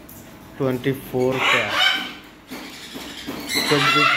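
A man's voice in short bursts, with African grey parrots calling from the cages.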